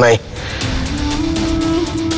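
Dramatic background music: a sustained synth drone over a rushing swell, its held note stepping up in pitch about a second in, after the tail end of a man's shout.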